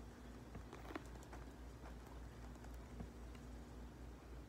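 Faint handling of a quilted patent leather handbag: a few light, scattered clicks and taps as the bag is turned and its flap opened, over a steady low hum.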